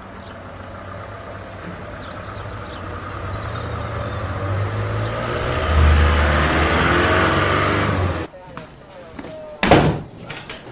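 Road traffic with a van passing close, its engine rumble and tyre noise building to a peak about six seconds in, then cutting off. Near the end, one sharp knock like a door shutting.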